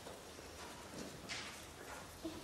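Hushed concert hall with a few faint, short clicks and a brief rustle, and no saxophone note sounding.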